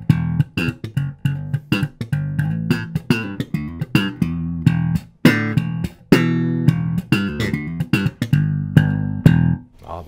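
Fender Mexico 75th Anniversary Jazz Bass played slap-style: sharp thumb slaps and popped strings over low notes in a quick, busy line, with a longer ringing note about six seconds in.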